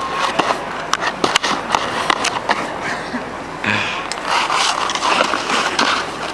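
Snowboard sliding over thin, packed snow, a continuous scraping hiss broken by many sharp clicks and scuffs from the board's base and edges.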